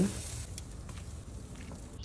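Faint, steady sizzle of seasoned chicken thighs cooking on a charcoal grill grate, with a few light crackles.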